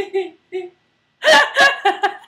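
A woman laughing: a few short soft laughs, then a louder burst of laughter a little over a second in.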